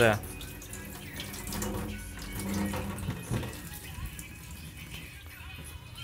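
Water from a kitchen tap running steadily onto a phone lying in a stainless steel sink, an even splashing hiss.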